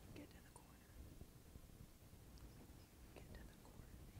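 Near silence, with faint indistinct voices.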